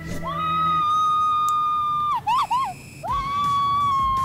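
A woman screaming while riding a zip line: one long high-pitched scream held at a steady pitch, breaking into a few quick wavering yelps, then a second long scream that slowly falls in pitch.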